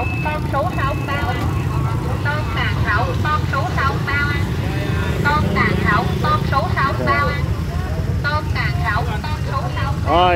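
Steady drone of motorbike engines and street traffic, with many voices talking and calling out around a busy street market.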